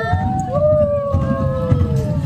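Several roller coaster riders screaming in long held cries that overlap and slowly fall in pitch, a new one starting about half a second in, over a low rumble.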